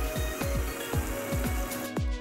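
Electronic background music with a fast, steady kick-drum beat, over the hiss of food sizzling in a frying pan that drops away near the end.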